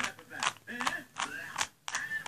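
A plastic 2x2 Rubik's-style cube being twisted quickly, its layers clicking as they snap round, about five sharp clicks roughly 0.4 s apart.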